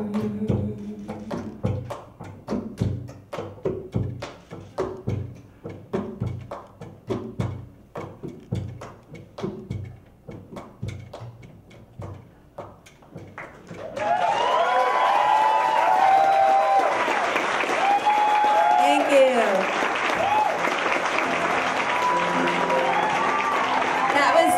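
Soft percussion taps, evenly about two a second, close out a live jazz-combo song as the last sung note dies away. About 14 seconds in, a club audience suddenly breaks into loud applause with cheering and whistles.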